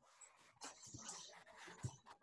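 Near silence: faint rustling noise over a video call, with a soft click shortly before the end.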